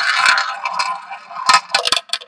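Ball rolling around the track of a small tabletop roulette wheel, a steady rolling sound that fades, then the ball clattering into the pockets with several sharp clicks near the end.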